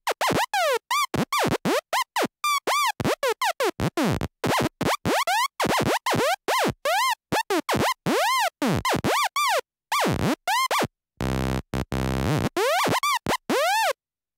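Phase Plant synth lead playing a gated pattern of short, chopped notes whose pitch swoops up and down in rapid arcs. A sine LFO with randomised speed drives the pitch, giving the irregular, psychedelic hi-tech psytrance effect. About three quarters of the way through comes a short stretch of buzzy, stuttering lower tone.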